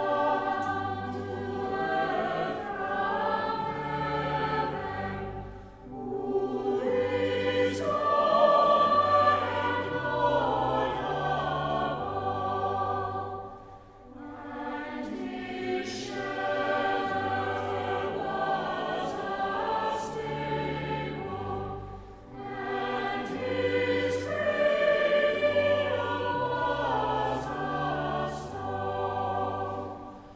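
Choir singing a slow piece over low sustained accompaniment, in long phrases of about eight seconds, each ending with a short dip before the next.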